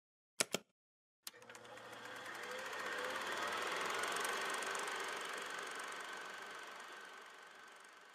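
Two quick clicks of a button being pressed, then a mechanical running noise that swells over about three seconds and slowly fades away.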